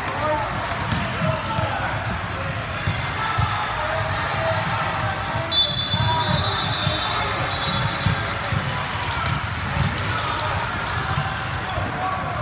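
Echoing sports-hall ambience during a volleyball match: repeated thuds of balls bouncing on the hardwood floor and voices in the background. About halfway through, a referee's whistle sounds for about a second and a half.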